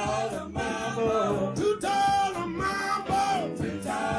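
Live southern rock band playing: electric guitar, bass, keyboards and drums under a lead melody that bends in pitch.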